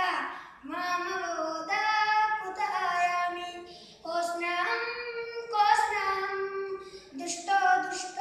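A boy singing solo and unaccompanied, a Bollywood song in Sanskrit translation, in long held melodic phrases with short breaks for breath.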